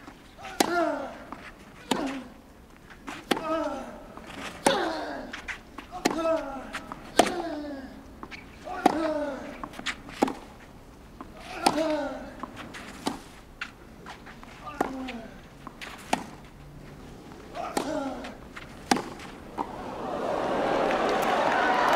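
A long tennis rally on a clay court: racket strikes on the ball about every second and a half, about fifteen shots, nearly every one followed by a player's grunt that falls in pitch.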